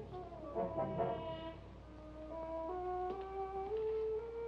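Dramatic background music score: a line of held notes climbs step by step to a note sustained near the end.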